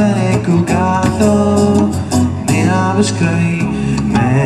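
Live acoustic band playing a song: a voice singing over strummed acoustic guitar, electric bass guitar and a hand drum.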